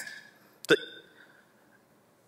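A pause in a man's talk, broken about two-thirds of a second in by one short clipped syllable that trails off briefly, then near silence.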